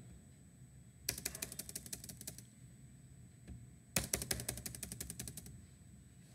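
Computer keyboard keys tapped in two quick runs of clicks, about ten a second, the first about a second in and the second about four seconds in.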